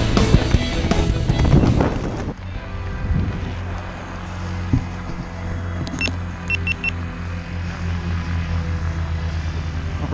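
Backing music that cuts off about two seconds in, followed by a steady low engine hum. A few short high-pitched beeps come in the middle.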